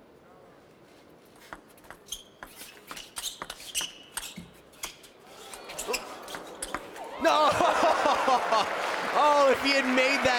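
Table tennis rally: the ball clicks sharply off bats and table in quick, uneven strikes. Crowd noise then swells, and loud cheering and shouting break out about seven seconds in.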